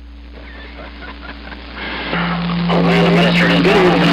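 CB radio receiver on channel 6 AM, an Icom IC-7300: a low stretch of hissy band noise with faint steady tones, then about two seconds in a strong station comes up with a steady low tone and garbled, unreadable voice.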